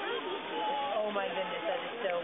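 People talking, several voices overlapping, with no clear words.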